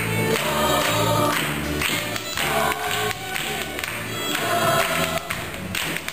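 Irish-folk-style song sung by a chorus of young voices, with fiddles and steady rhythmic hand-clapping keeping the beat.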